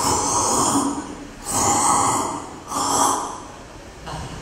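Three long slurping sounds, each about a second long, for gulping down a bowl of soup.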